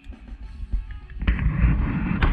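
Wind buffeting the microphone in low, rumbling gusts, with a loud rush of noise setting in a little over a second in.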